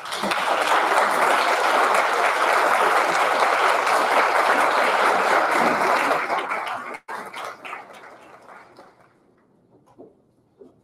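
Audience applauding, a dense steady clapping for about seven seconds that then thins to scattered claps and dies away.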